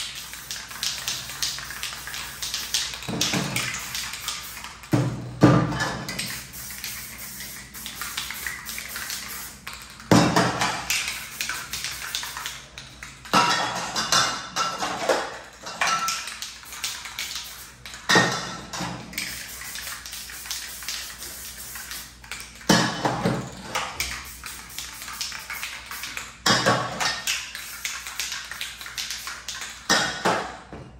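Aerosol spray paint cans in use: the mixing balls rattling and clicking as cans are shaken and handled, and bursts of spray hissing, repeated every few seconds.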